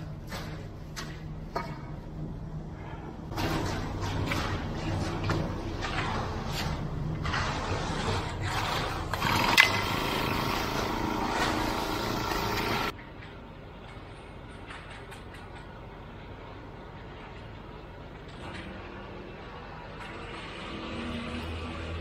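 Concrete mixer truck's engine running steadily under scraping and knocking of concrete being placed and raked. About 13 seconds in, the sound drops abruptly to a quieter steady hum.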